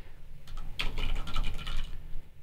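Computer keyboard being typed on: a handful of quick keystrokes, most of them in the second half.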